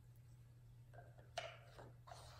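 Near silence over a steady low hum, with one light click about one and a half seconds in as a wooden number card is set down on the tens board.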